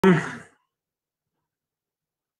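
A man's brief vocal sound, a clipped sigh or syllable, cut off within the first half second, then dead silence.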